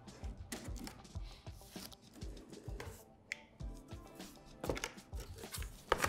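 Scissors snipping and cutting through packing tape on a cardboard TV carton: a scattered run of short, faint clicks and crackles, under quiet background music.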